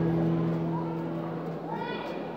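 A low voice holds one steady note that fades out about one and a half seconds in. Near the end comes a short, high call that rises and falls.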